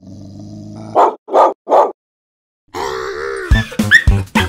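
Three short vocal sounds in quick succession, about 0.4 s apart, from a cartoon soundtrack, after a second of soft music. Music starts up again in the last second or so, with sharp rhythmic hits at the very end.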